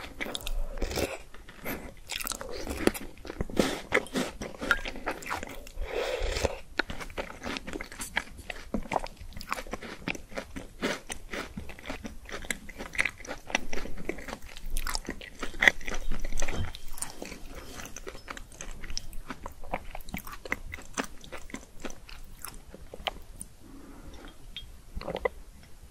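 Close-up crunching and chewing of a small frozen white cube: a dense run of sharp cracks and crunches with wet mouth sounds, loudest a little past the middle.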